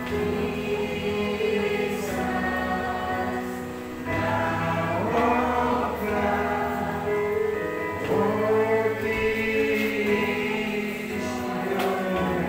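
A small mixed group of voices, men and women, singing a gospel hymn together in held, sustained notes over an instrumental backing.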